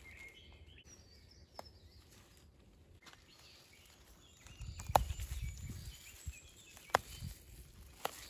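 Faint birds chirping in woodland, then, about halfway through, close rustling and handling noise as stinging nettle tops are picked by a gloved hand, with two sharp clicks.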